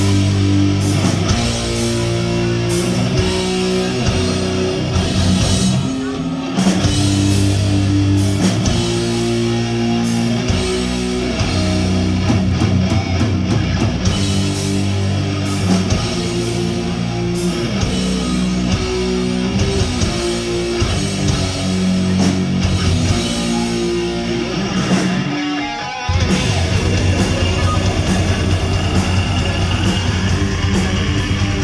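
A heavy metal band playing live and loud, with electric guitars, bass guitar and drum kit. The low end drops out briefly near the end before the full band crashes back in.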